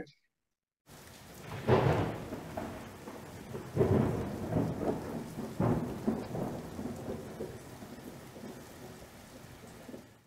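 Thunderstorm sound effect: steady rain with three rolls of thunder about two, four and six seconds in, fading toward the end.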